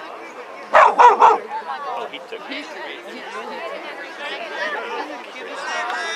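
Crowd chatter with a dog barking three times in quick succession about a second in, the barks louder than the voices.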